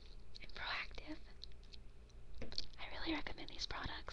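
A woman whispering close to the microphone, in two short phrases with a pause between them.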